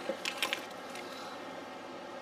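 A few light clicks and rustles of paper and a plastic sticker sheet being handled in the first half second, then faint room tone.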